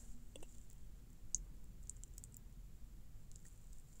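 Near-quiet pause holding a few faint, scattered clicks over a low steady hum.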